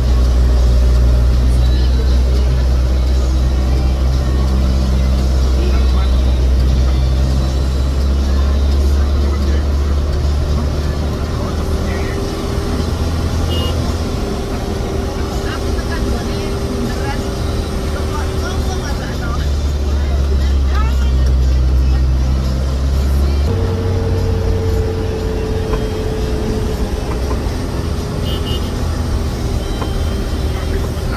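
Mitsubishi Canter minibus's diesel engine heard from inside the cab, labouring up a long, steep climb. Its low drone holds steady, then shifts in pitch several times as the engine speed changes.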